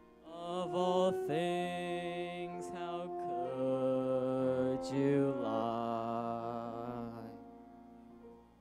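A young singer holding long, wavering notes with vibrato over held accompaniment chords, part of a slow, grieving song. The music fades out about seven seconds in.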